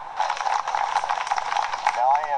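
Audience applauding: a dense run of many hand claps, beginning a moment in.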